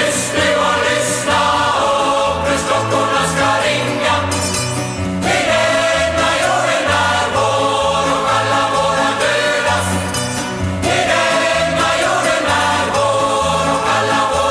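A choir singing with live band accompaniment, a bass line pulsing steadily underneath.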